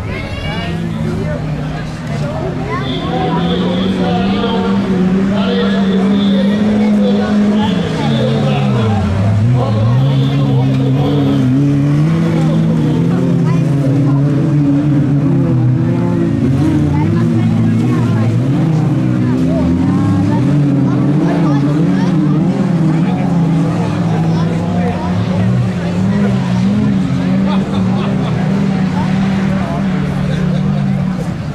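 1800-class autocross cars racing on a dirt track, their engines revving hard and easing off as they work through the course. The engine pitch wavers up and down throughout, dropping sharply about nine seconds in and again near twenty seconds.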